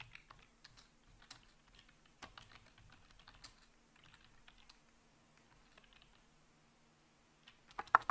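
Typing on a computer keyboard: faint, irregular keystrokes, sparser in the second half.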